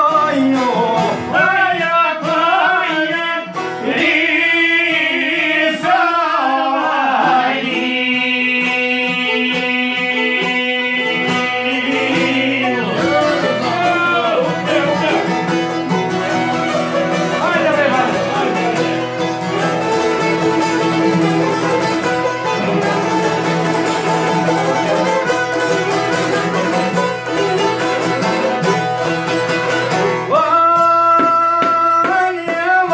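Albanian folk music played live on violin, a round-backed oud-style lute and a çifteli (two-string long-necked lute), with a man singing over the plucked and bowed strings.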